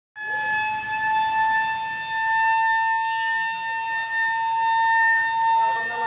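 A loud siren-like tone held on one steady pitch, starting and cutting off abruptly. Faint voices can be heard under it near the end.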